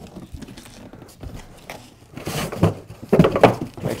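Large cardboard shipping carton being handled and moved aside: cardboard rustling and scraping, growing louder about two seconds in, with knocks near the end.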